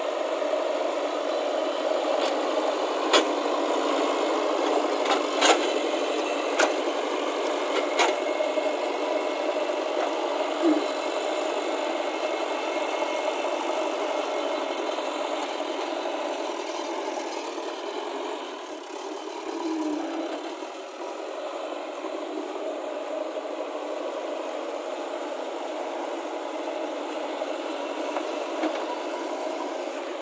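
JCB 3DX backhoe loader's diesel engine running steadily while the machine works earth. A few sharp knocks come in the first several seconds, and the engine eases off slightly about two-thirds of the way through.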